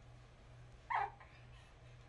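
A single short, high yelp that falls in pitch, about halfway through, over a faint steady low hum.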